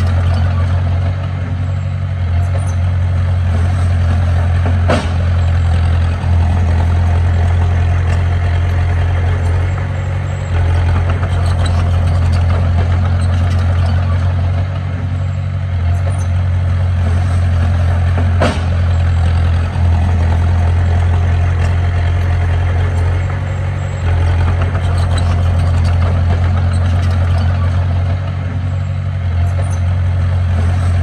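Komatsu D20P crawler bulldozer's diesel engine running steadily with a deep drone as the machine pushes rocky soil, its loudness dipping briefly now and then. Two sharp knocks cut through, about five seconds in and again just past the middle.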